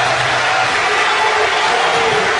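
A hall audience applauding and cheering, a steady, loud wash of clapping.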